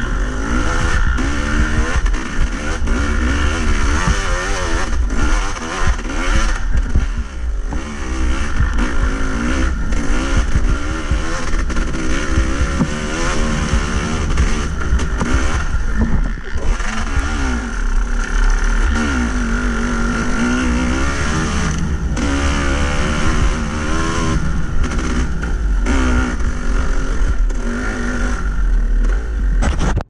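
Yamaha YZ250 two-stroke single-cylinder dirt bike engine, heard from the rider's camera, revving up and down constantly as the throttle is worked over rough trail, with heavy rumble underneath.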